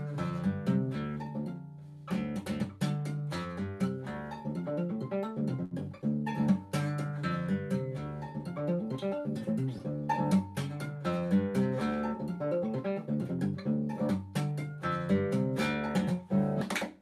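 Nylon-string classical guitar played solo: a fast, continuous run of notes built from left-hand hammer-ons and right-hand pull-offs, with a brief break about two seconds in before the run carries on.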